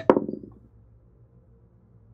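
A die clattering on a table and quickly coming to rest, a rapid run of small ticks that dies away within about half a second.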